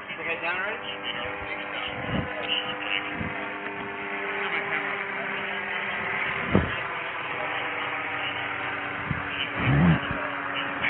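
Indistinct voices over a steady mechanical hum, with a few sharp knocks, the loudest about six and a half seconds in, and a louder burst of sound near the end.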